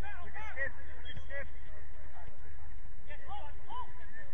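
Players' voices shouting across the pitch in short, far-off calls, a few near the start and a cluster near the end, over a steady low rumble.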